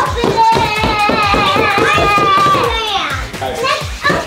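Background music with a steady beat and long held melody notes, mixed with excited children's voices.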